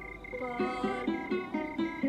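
Background music: a plucked string instrument playing quick repeated notes, about five a second, over a steady high sustained tone. The music swells back up about half a second in.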